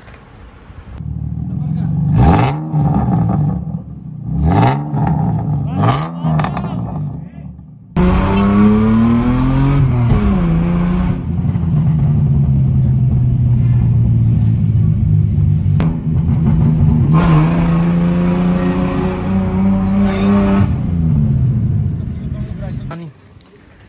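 Mazda RX-8 twin-rotor Wankel engine on a test run after a fuel pump replacement. It is first revved in three quick blips over its idle. After a cut about eight seconds in, it runs under way, its pitch climbing, dropping back, holding steady, then climbing again as the car accelerates.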